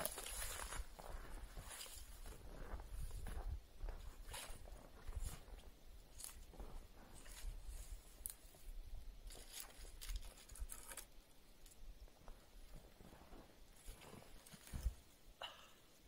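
Snowshoes in deep snow: a thud of landing right at the start, then uneven crunching and shuffling steps that thin out and grow fainter later on.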